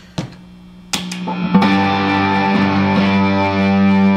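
Fender Telecaster electric guitar with distortion, strumming a rock-style open G chord (A string muted, third fret on the B and high E strings). One quick strum comes about a second in, then a full strum half a second later is left to ring steadily.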